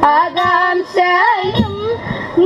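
Young female voices singing a Malayalam song for a Kerala group dance, a melodic line that wavers and glides between held notes, with a few short sharp beats underneath.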